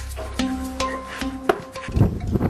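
Background music: held low notes, with a fresh struck note about every half second and a sharper hit near the end.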